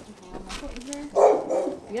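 A puppy barking about a second in, with a weaker yelp just after.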